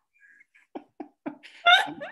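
People laughing softly: three short chuckles in quick succession, then a brief higher-pitched laugh near the end.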